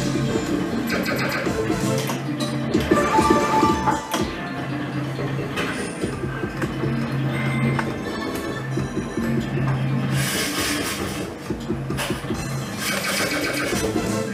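Electronic game music and spin sound effects from a Neon Wildcat video slot machine as its reels spin, with short jingle blips and bursts of brighter effect sounds about ten seconds in and near the end.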